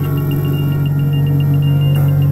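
Ambient electronic drone music: a steady low synthesizer drone with a high tone pulsing several times a second above it.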